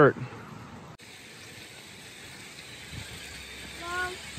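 Quiet, steady outdoor background noise with no distinct event, broken by an abrupt cut about a second in.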